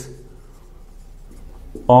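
Felt-tip marker writing on a whiteboard, faint strokes during a pause in speech, with a man's voice coming in near the end.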